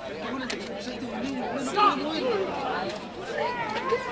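Several voices talking and calling out at once, with no clear words, a louder call just under two seconds in.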